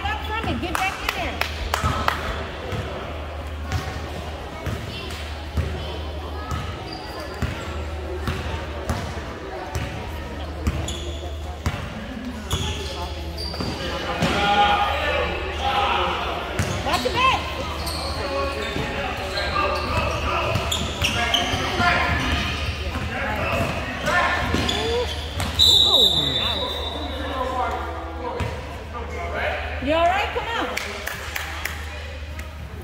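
A basketball bouncing and being dribbled on an indoor gym floor in repeated sharp knocks, with players and spectators calling out in the echoing hall. A short high-pitched note sounds near the end.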